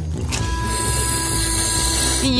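Background music under a sustained, steady electronic tone that comes in about a third of a second in and holds: an added cartoon sound effect for a bubblegum bubble swelling.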